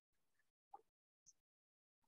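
Near silence: a pause between read sentences, with one faint brief sound about three quarters of a second in.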